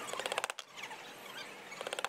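Small hammer tapping nailhead trim nails into a wood-framed upholstered board: a quick run of light metal taps at the start and another near the end, with a quieter spell between.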